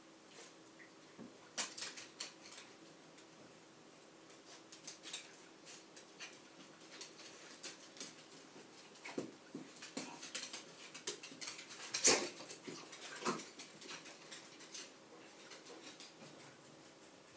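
A Jack Russell terrier moving about a room: faint, irregular clicks and taps, with a louder knock about twelve seconds in.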